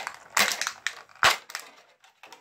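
Clear plastic toy packaging crinkling and crackling as it is pulled apart by hand, in irregular bursts, the sharpest crackle a little past the middle.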